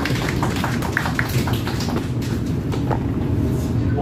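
Steady low rumble inside a passenger train carriage, with scattered light clicks throughout.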